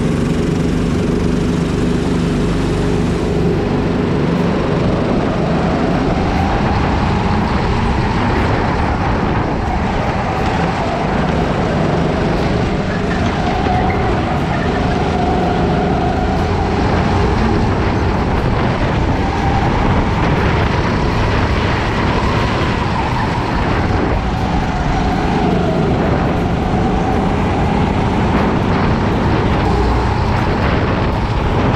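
Rental kart engine heard from onboard the kart while it laps, its pitch rising and falling again and again as it accelerates out of corners and eases off into them.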